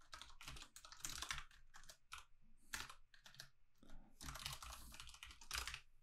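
Quiet typing on a computer keyboard: quick runs of keystrokes broken by short pauses, with a longer run near the end.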